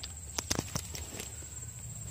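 Steady high-pitched insect drone, with a few sharp light clicks about half a second to a second in.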